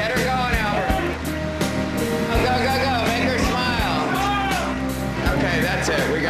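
Pop-rock band music with a sung melody over bass, drums and guitar, with a steady beat.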